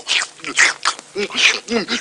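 A cartoon boy's voiced gobbling noises as he wolfs down noodles: a quick run of short grunts and slurps, about three a second.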